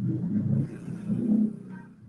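Low, uneven rumbling and rustling handling noise as a papaya is picked up and brought close to the microphone, fading toward the end.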